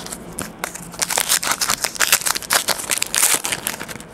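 Plastic and foil card wrapping crinkling in the hands as a trading card is unwrapped, a dense, irregular run of sharp crackles.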